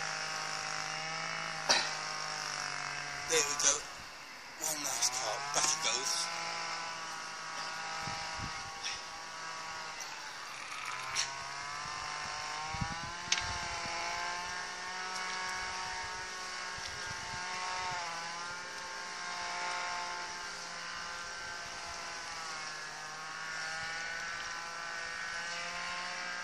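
A small engine running steadily in the background, its pitch dipping and picking up again twice. A few short knocks and rustles come in the first several seconds.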